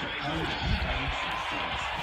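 A faint voice in the background over a steady hiss.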